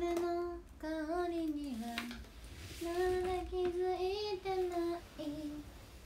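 A young woman singing a short melody unaccompanied, in a few brief phrases of held notes.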